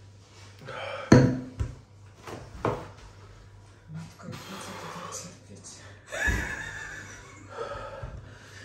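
A man breathing hard and unevenly, with three sharp exhales about a second in, near three seconds and just after six seconds, and softer breaths between: a reaction to the burn of an extremely hot chili chip.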